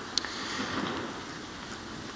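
A pause in speech: steady room tone of a lecture hall, with one short faint click near the start.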